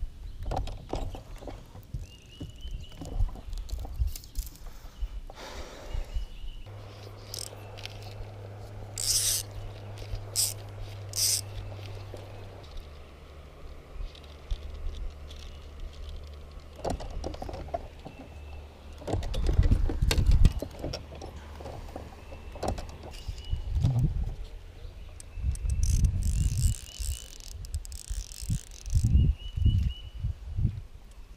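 Fly line and hands being worked close to the microphone: rustling, bumps and short clicks as line is stripped and handled. Through the middle a steady low hum of the bow-mounted electric trolling motor runs for about ten seconds, dropping a step in pitch partway through.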